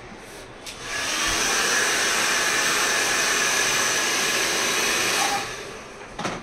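Hand-held hair dryer switched on about a second in, blowing steadily with a faint whine over its rushing air, then switched off and winding down shortly before the end.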